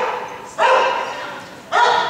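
A dog barking twice, once about half a second in and again near the end, each bark trailing off in the echo of a large indoor arena.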